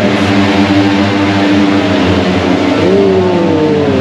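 Racing motorcycle engines running on track during free practice: a loud, steady engine drone, with one engine note sweeping up and then down in pitch near the end.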